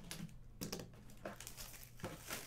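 A few light, scattered clicks and taps of a graded comic's hard plastic case being handled and turned over.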